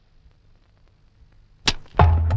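A quiet film soundtrack with a faint low hum, broken near the end by one sharp click-like hit. Just after it, a loud low sustained note comes in.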